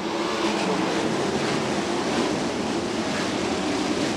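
A pack of wingless USAC sprint cars, methanol-burning V8s, running together at full throttle as the field takes the green flag. The sound is a steady, dense blend of many engines.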